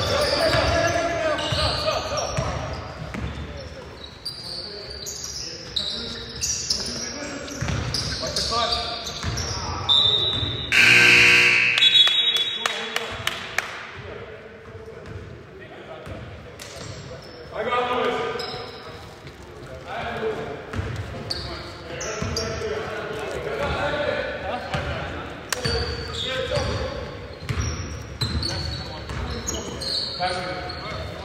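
Basketball game sounds echoing in a gym: a ball bouncing on the hardwood floor, short high sneaker squeaks and players calling out. A loud tone lasting about a second sounds about eleven seconds in.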